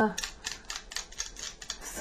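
Quick, irregular light clicks and taps of a utensil against a glass mixing bowl while an egg yolk is worked in it.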